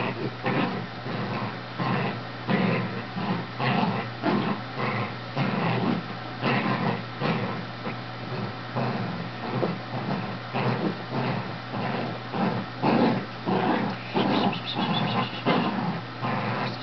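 Shetland sheepdog growling in short, repeated bursts while tugging on a plush toy in play.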